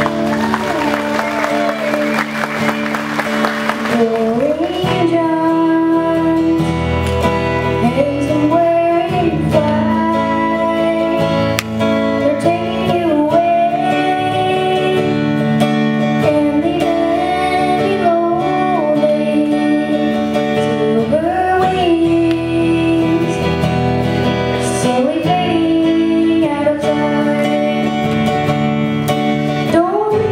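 A boy singing a country song live to his own acoustic guitar strumming. After a few seconds of guitar alone, the voice comes in about four seconds in.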